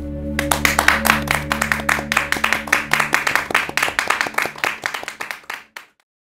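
A small group of people clapping over closing music, the clapping and music fading out near the end.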